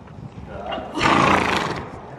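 A horse snorting close by: one loud, breathy blast through the nostrils about a second in, lasting under a second.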